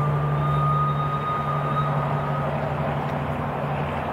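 Steady low engine drone, with a thin high whine over it that stops about two and a half seconds in.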